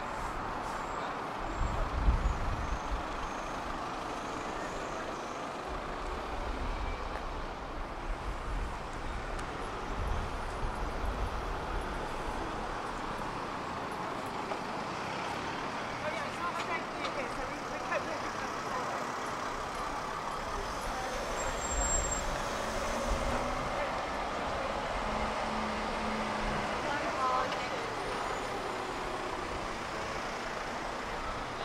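Street traffic: cars and taxis driving past with low engine rumbles that come and go, over a steady background hum, and passers-by talking.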